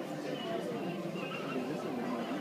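Indistinct voices of people talking, with no clear words, over a continuous steady background.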